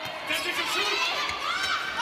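Indoor arena crowd noise, a steady mix of many voices, during a volleyball rally.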